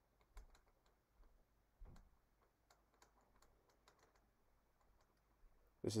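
Faint, irregular light taps and clicks of a stylus writing on a pen tablet.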